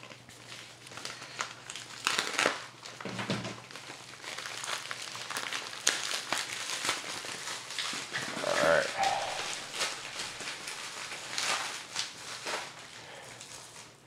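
Plastic packaging crinkling and rustling as hands tear open and pull apart a bubble-lined plastic bag, in irregular crackles throughout.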